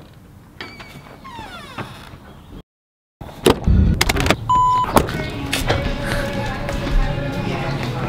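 A door opening with some knocks and creaking, then a car's push-button ignition: knocks and a short electronic beep about four and a half seconds in. Steady music takes over after that.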